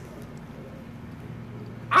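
A pause in a man's talk: only room tone with a steady low hum, until his voice comes back in near the end.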